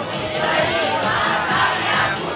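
A hall full of schoolchildren singing and shouting along together, loud and massed, over a karaoke backing track. The crowd's voices swell about half a second in.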